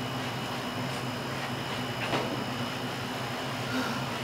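A steady low mechanical hum over an even background rush, with a few faint clicks.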